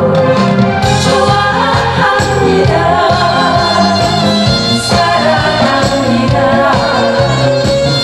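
A woman singing a Korean pop song (gayo) live into a handheld microphone, with instrumental accompaniment over the stage sound system.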